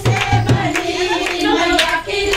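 A group of women singing a Hindu devotional bhajan together, kept in time by rhythmic hand clapping and the deep strokes of a dholak, a barrel drum, about four beats a second.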